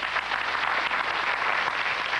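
Studio audience applauding a correct answer, a steady dense patter of many hands clapping.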